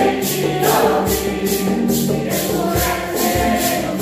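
A mixed choir singing a Santo Daime hymn together, accompanied by strummed guitars and a mandolin-type instrument. A steady shaker beat runs about two and a half strokes a second, with a hand drum underneath.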